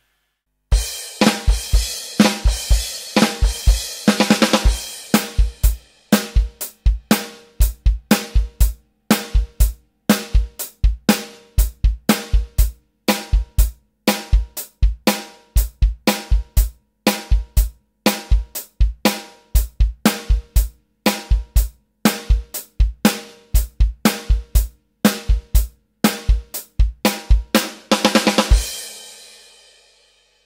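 Electronic drum kit played alone at full tempo: a heavy rock groove of bass drum, snare and cymbals, with crash-heavy stretches near the start and near the end. It closes on a final crash that rings out and fades.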